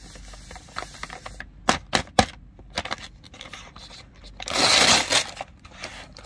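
Plastic snack bag of KitKat mini bars handled and crinkled, with a few sharp crackles around two seconds in, then torn open in one loud rip lasting under a second near the end.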